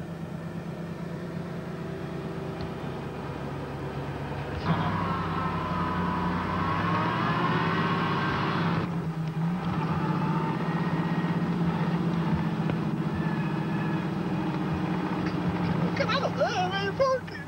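Car engine running steadily, then revving harder about five seconds in, its pitch climbing for a few seconds before easing back near the ninth second, under load in deep snow.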